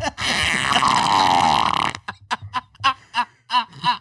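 A man's long, raspy, buzzing noise, lasting about two seconds and likened to a blown raspberry, followed by short, choppy bursts of laughter.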